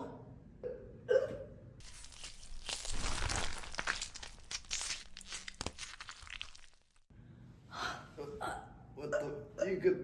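A crunching, tearing sound effect of dense crackles, lasting about five seconds and stopping abruptly, standing for vocal cords being ripped out of a throat.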